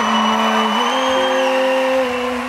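Audience applauding and cheering over backing music with sustained chords. A very high held note rides above it and ends about a second and a half in.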